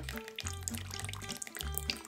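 Water trickling from a tipped plastic toddler cup through its Reflow flow-control insert into a bowl, a thin, held-back stream, under background music with a low bass line.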